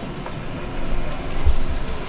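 Steady noise of an audience in a large hall, with two low thumps about one and a half seconds in.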